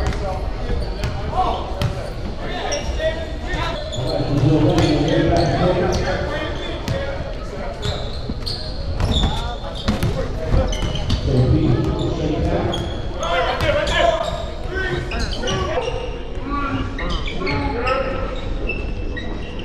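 A basketball bouncing on a hardwood gym floor during play, with many indistinct voices echoing in a large gymnasium.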